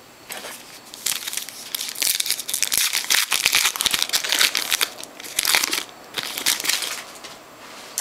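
Foil trading-card pack wrapper being torn open and crinkled by hand, a run of crackling from about a second in until near the end.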